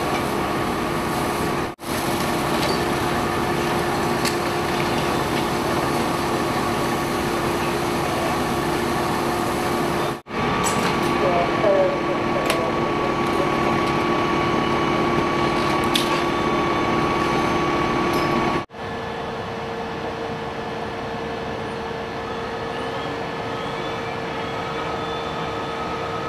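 Fire truck engine idling: a steady drone with a constant hum, broken by three short dropouts. After the last dropout, about two-thirds of the way through, it is quieter and the hum sits higher.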